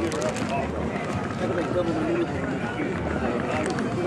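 Indistinct voices of people talking in the background on a city street, with footsteps on pavement.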